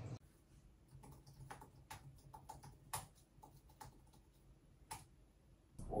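Faint typing on a computer keyboard: irregular single keystrokes, two or three a second.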